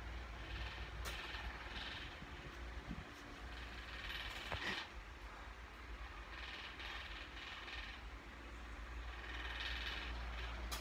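Domestic cat purring: a steady low rumble, with soft rustling and a small click about four and a half seconds in.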